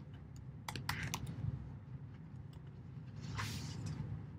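Computer keyboard typing: scattered keystrokes with a quick cluster about a second in, then a brief soft rush of noise near the end.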